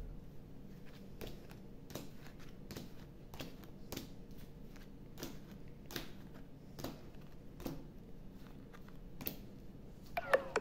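Neapolitan playing cards being dealt one by one onto a table, each landing or being slid into place with a light click, in an uneven run of soft taps, about one or two a second.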